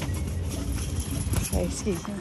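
Wind buffeting the phone's microphone, a steady low rumble, with a faint voice near the end.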